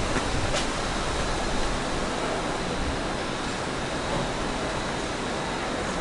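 A steady, even rushing hiss outdoors, with a faint tap about half a second in.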